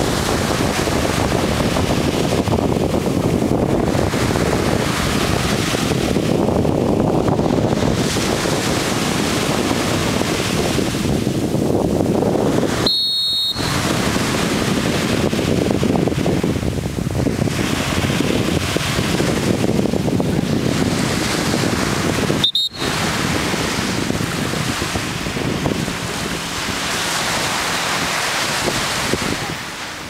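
Wind buffeting the microphone over surf breaking on the beach: a steady rushing noise that swells and eases, cut off briefly twice by short dropouts.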